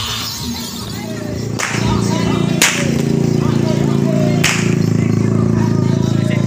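Three sharp cracks of a long whip (pecut), about 1.5, 2.5 and 4.5 seconds in, over music and a steady low buzz that comes in with the first crack.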